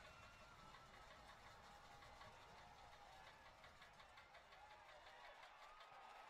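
Near silence: faint stadium background with distant, wavering voices.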